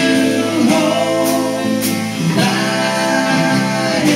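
Live indie rock band playing a song: electric and acoustic guitars with a drum kit, and singing.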